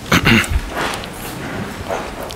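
Congregation sitting back down: rustling and shuffling, with a brief squeaky sound near the start.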